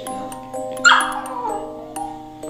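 A small dog gives one sharp bark about a second in, falling in pitch: a warning at a hand reaching toward the woman it is guarding. Background music with chiming tones plays throughout.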